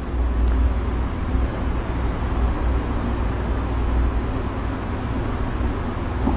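Steady low rumble of background noise with a faint haze above it, holding level throughout, with no distinct knocks or clicks.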